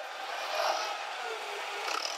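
Toyota 8FGCU25 propane (LP) forklift running steadily as it drives across a concrete floor.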